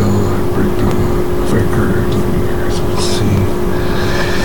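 Indistinct, muffled voices from a television, over a steady electrical hum.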